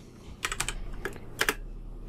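Computer keyboard keys being typed: a few separate keystrokes in short runs, as a word is typed in.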